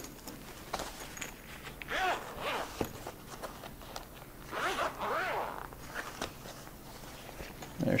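Zipper on a fabric travel case being pulled open around the case in two long runs, the first about two seconds in and the second about five seconds in.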